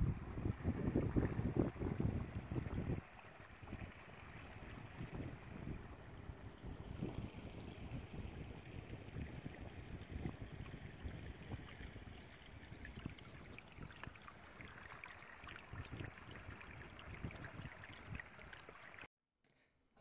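A shallow stream trickling, with a heavier low rumble for the first three seconds, cutting off suddenly near the end.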